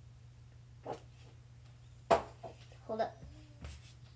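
A single sharp thump about two seconds in, with a child's brief wordless vocal sounds before and after it, over a steady low hum.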